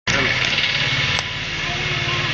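A hand-held sparkler burning, giving a steady loud hissing crackle, with one sharper crack about a second in.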